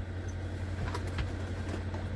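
Semi truck's diesel engine idling steadily, heard from inside the cab as a low hum, with a couple of faint clicks about a second in.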